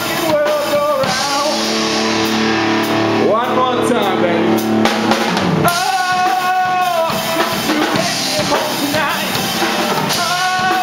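A rock band playing live: drum kit, electric guitar and bass guitar under a male singer's vocals, with a held chord ringing for a few seconds in the first half.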